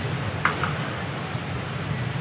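Steady low rumble, with a brief scrape of a spoon against a steel kadai about half a second in.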